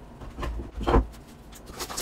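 Padded paper mailer being handled, with short rustles and a sharp knock about a second in.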